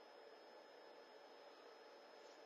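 Near silence: a pause in speech with only a faint steady background hiss.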